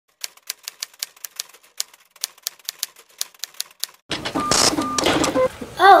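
A quick run of sharp typing clicks, about five a second, that stops about four seconds in. Then room noise with two short beeps.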